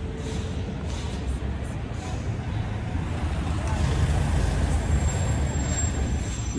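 Street traffic noise: a steady low rumble of vehicles, growing slightly louder over a few seconds.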